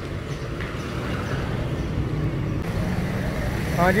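Street traffic noise: a steady low rumble of cars and motorbikes passing on a market road. A man's voice starts near the end.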